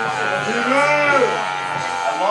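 A man's voice in one drawn-out yell that rises and then falls in pitch, with music playing in the background.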